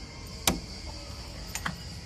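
Clicks from a wooden door being handled: one sharp click about half a second in, then two fainter clicks close together about a second later.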